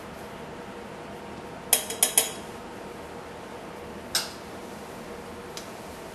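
A few sharp metallic clinks against a stainless steel pot as iron powder is tipped in: three quick ones about two seconds in and a single one about four seconds in, over a faint steady hiss.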